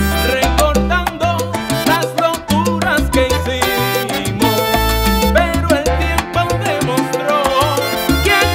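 Salsa music played by a Latin dance orchestra, an instrumental stretch with a pulsing bass line and no vocals.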